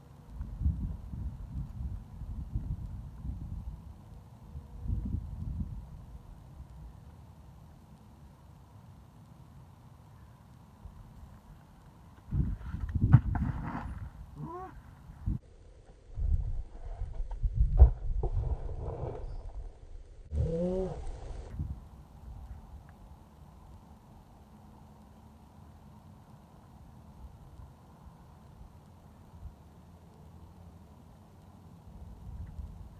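A climber's loud grunts and strained yells of effort on a hard bouldering move, several in a few seconds around the middle, the last a short shout that rises in pitch. Before and between them, low rumbling of wind on the microphone.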